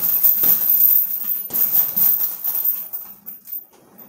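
Fists striking a hanging heavy bag: a run of hard thuds over the first three seconds, tailing off near the end.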